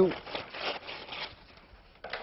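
A sheet of brown paper being cut off its roll: about a second of irregular rasping, papery noise, then a short rustle near the end.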